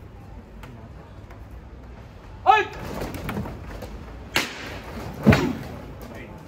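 A short shouted call, then two sharp knocks about a second apart, the second one the loudest and deepest.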